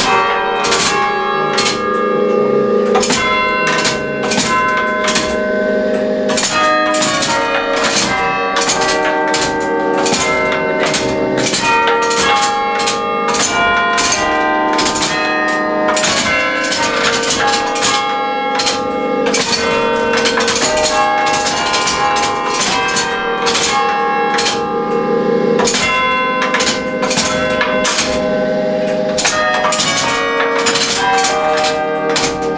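Church bells played by a pinned-drum carillon machine: its hammers strike the bells in a tune of quick successive notes, each bell ringing on under the next strikes.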